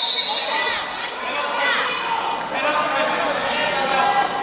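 Voices shouting and calling out in an echoing gymnasium, with a few dull thuds from wrestlers moving on the mat and a brief high squeak at the very start.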